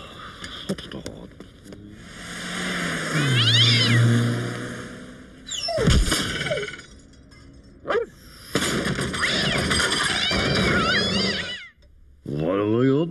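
Cartoon sound effects of cats yowling and screeching in long wavering cries. About six seconds in there is a crash as something lands in a skip.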